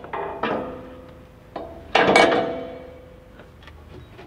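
Steel bull bar mounting bracket clanking against the truck frame and studs as it is fitted: several sharp metallic knocks, each ringing briefly, the loudest about two seconds in.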